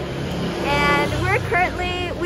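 A woman's voice talking, over a low steady rumble.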